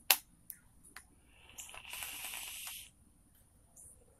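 A sharp click, then about a second of hissing and crackling from a squonk mod's dripping atomizer as its triple-core Clapton coil fires and a hit is drawn through it.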